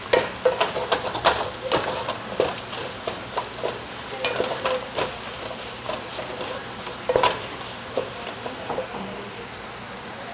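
Onions and ginger-garlic paste sizzling in oil in a non-stick pot while a wooden spatula stirs them, with frequent, irregular light knocks and scrapes of the spatula against the pot.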